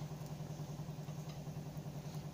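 A steady low hum, like a small motor or fan running, over faint background noise.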